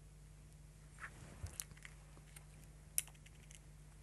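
A few faint clicks and light taps of thin glass stringers being handled and set down on glass, the sharpest click about three seconds in, over a low steady hum.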